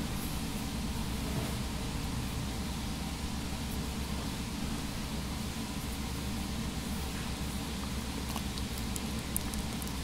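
Steady room noise: an even hiss over a low hum, with no distinct events.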